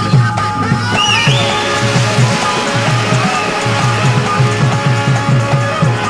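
Qawwali ensemble playing an instrumental passage: a hand drum beats a fast, even rhythm, about five strokes a second, under held melodic notes.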